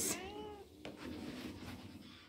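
Domestic tabby cat giving one short meow that falls in pitch and fades within the first second, asking to be let outside.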